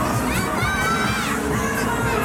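Riders screaming on a fairground thrill ride. Several high-pitched screams overlap, with one long rising-and-falling scream through the middle, over a steady low rumble.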